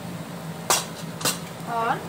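Metal spatula clinking twice against a cast-iron tawa, two sharp clicks about half a second apart.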